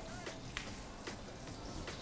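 Faint, sparse crackling of hot oil in a countertop deep fryer, a few scattered pops over a low hiss.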